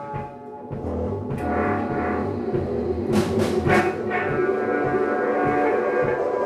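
Live band playing an instrumental passage on electric guitar and drum kit. The sound dips briefly at the start, comes back in fuller, and has cymbal crashes about three seconds in.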